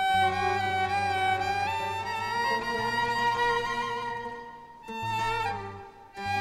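Bowed violin playing a slow melody of long held notes that slide from one pitch to the next, over a low note held steady underneath. The line thins out a little past four seconds, and a new phrase starts just before five seconds.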